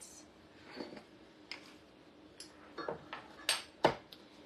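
Light kitchen handling sounds: a few short clicks and knocks of utensils and containers being set down on a counter, the loudest two near the end, over a faint steady hum.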